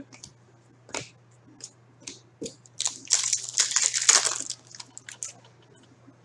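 A sports card pack's wrapper being torn open and crinkled by hand. There is a dense crackling burst from about three seconds in that lasts over a second, with scattered clicks and rustles of handled cards before and after.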